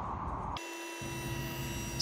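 A soft room hush, then from about half a second in a steady machine whine made of several fixed tones: a woodworking shaper's electric motor running at speed.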